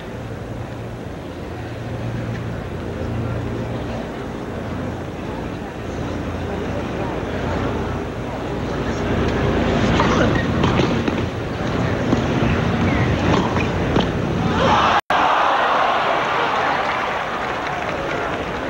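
Tennis stadium crowd murmuring during a rally, with a few sharp racket-on-ball hits from about ten seconds in; after a brief cut, loud crowd applause and cheering as the point ends.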